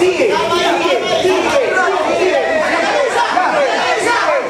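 Overlapping chatter: several people talking at once, with no single voice standing out.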